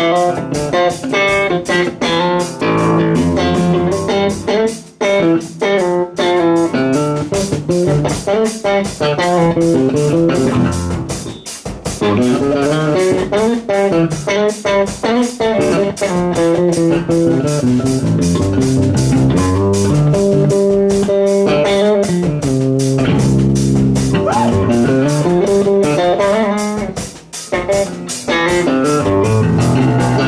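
Electric bass guitar solo through an amplifier: fast plucked runs and chords, with a few short breaks between phrases.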